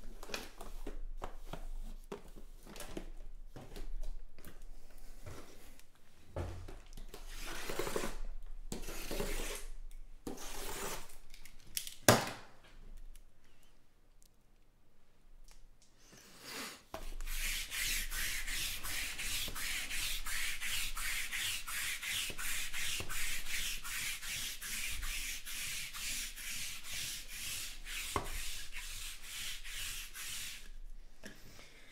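Cardboard trading-card hobby boxes being slid, handled and stacked on a mat-covered table, with irregular rustles and scrapes and one sharp knock about twelve seconds in. For the last dozen seconds a steady, rapid rubbing or scraping follows, about three strokes a second.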